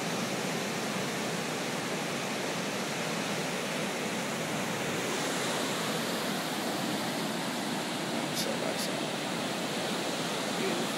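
Ocean surf breaking and washing up the beach, a steady rush with no pauses.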